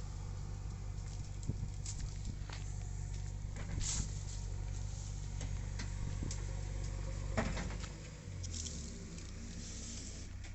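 A motor running steadily as a low hum that shifts slightly in pitch about eight seconds in, with scattered clicks and rustles over it.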